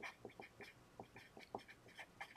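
Felt-tip marker squeaking on paper in a quick run of short, faint strokes as letters are written.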